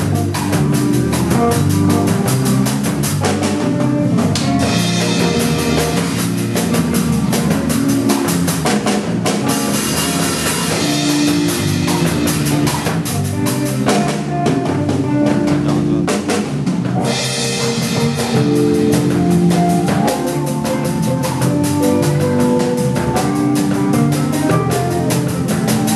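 An acoustic drum kit played live in a steady groove of bass drum, snare and rimshots, over a recorded backing track with bass and other pitched instruments. There are long stretches of cymbal wash, with a short break in it around the middle.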